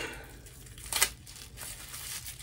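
Tissue paper crinkling as it is handled and pulled out of a strappy sandal, soft rustles with one sharper crackle about a second in.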